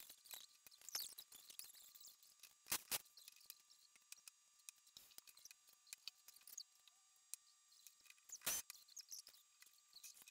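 Near silence with faint clicks and light knocks of bottles and a blender cup being handled on a kitchen counter, with two slightly louder brief knocks, about three seconds in and near the end.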